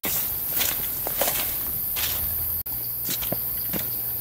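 Footsteps through dry leaf litter and undergrowth, an irregular walking-pace rustle, broken once briefly about two and a half seconds in.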